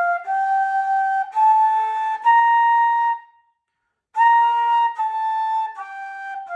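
Bamboo bansuri flute in A-sharp bass playing sustained, clean notes that climb step by step up a scale. After a short pause for breath about three seconds in, the notes step back down. The flute is being played to check its tuning.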